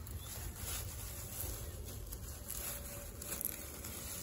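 Faint rustling of long grass as a hand parts it, over a low steady background rumble.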